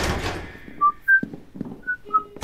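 Footsteps on a hard corridor floor, with several short high rubber-sole squeaks at slightly different pitches and soft knocks under them.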